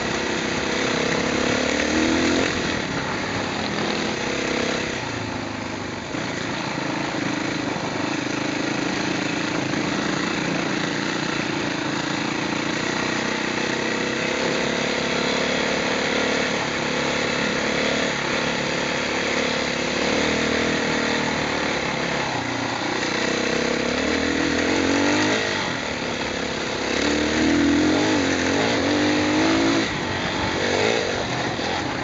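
Off-road motorcycle engine running under load on a rough dirt track, its revs climbing and dropping, with rising bursts of revs near the start and again twice near the end, all over a constant noisy rush.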